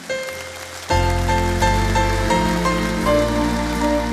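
Live string orchestra and band with grand piano playing the instrumental introduction to a song. A quiet first note opens it, then from about a second in a slow melody of held notes moves over sustained bass notes.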